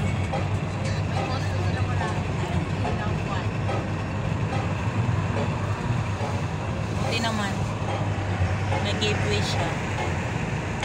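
Road noise inside a moving taxi: a steady low rumble of the engine and tyres.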